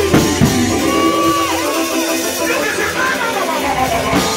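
Live gospel band music with a drum kit and keyboard. A voice holds and bends notes over it. There are drum hits near the start, and the bass thins out in the second half.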